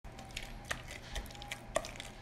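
A whisk stirring thick cake batter in a mixing bowl: soft wet squishing with a few scattered light clicks.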